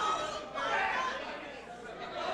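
Indistinct chatter of several voices, with no clear words.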